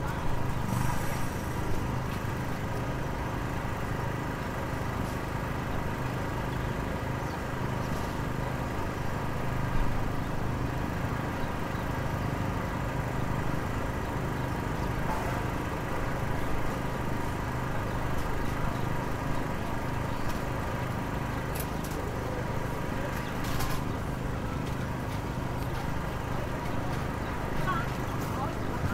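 Road-works machinery running steadily in a city street: a continuous low engine drone with several steady tones above it, and a few faint clicks at intervals.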